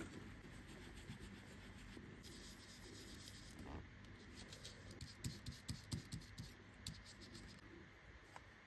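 Faint, irregular brushing and scratching of an oval blending brush loading pigment ink from a pad and dabbing it onto a paper die-cut, busier a little past the middle.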